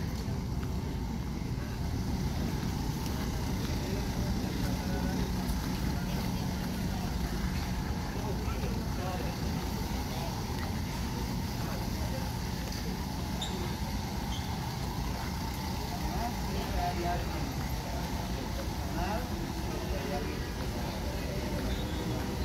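Airport terminal concourse ambience: a steady low hum with a murmur of distant travellers' voices.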